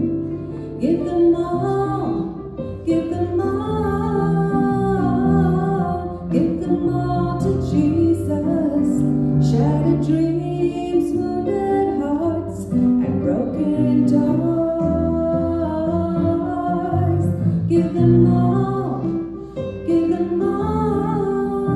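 A woman singing a slow gospel song into a handheld microphone over instrumental accompaniment, her held notes gliding and sustained.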